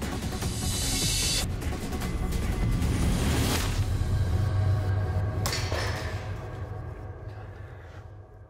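Dramatic background music with three swishes of a blade slashing through strands of Christmas lights, about half a second, three seconds and five and a half seconds in. The music fades near the end.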